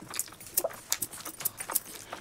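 Close-miked eating sounds from a biryani meal: a rapid run of small, sharp, wet clicks from chewing and lip smacking.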